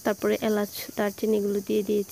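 A woman's voice talking in short syllables.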